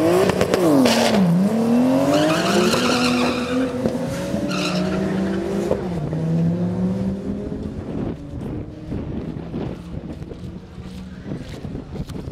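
Two drag racing cars launching off the start line and accelerating hard down the strip. The engines rev up through gear changes, with sharp drops in pitch about a second in and again near six seconds. The sound fades into the distance over the last few seconds.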